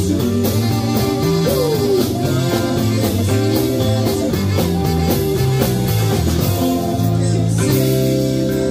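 A live rock band playing: electric guitars over a drum kit and keyboard, a steady groove. One note slides down in pitch about a second and a half in.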